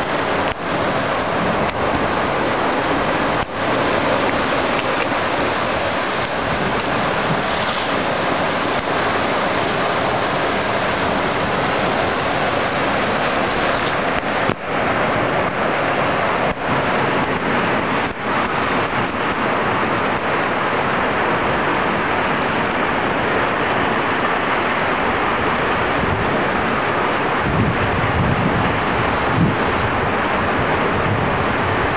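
Steady rushing of sea surf breaking on the rocks below, mixed with wind, with a few short dips and clicks. Near the end, low gusts of wind buffet the microphone.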